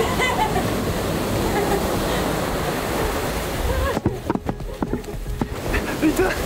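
A wave washing into a sea cave right up to the microphone: a loud, steady rush of water for about four seconds, then broken splashing and knocks as it drains back.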